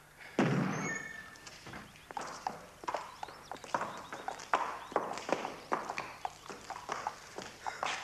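A horse's hooves clopping at a walk on a hard floor, in uneven hoofbeats, with one fuller sound about half a second in.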